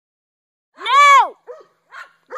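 A dog barking high-pitched at a skunk: one long, loud bark about a second in, then a shorter, fainter one.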